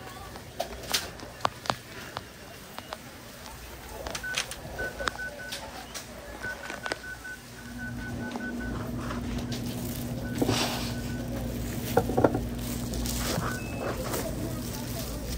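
Busy grocery store ambience: scattered clicks and knocks, runs of short high electronic beeps in quick series, and a steady low hum that comes in about halfway.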